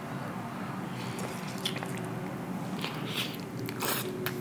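A person biting into a taco and chewing it, with a few short, wet, crunchy chewing sounds.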